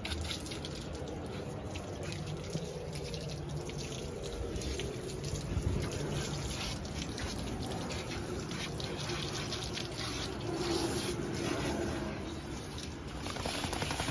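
Water from a garden hose running onto a wet golden retriever's coat and the deck: a steady splashing with dripping and spatter.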